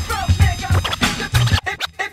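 Hip hop track with turntable scratching, quick back-and-forth pitch sweeps of a record, over a deep bass line that drops out near the end.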